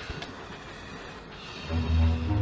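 Quiet film soundtrack with faint background music, and a low rumble that sets in near the end.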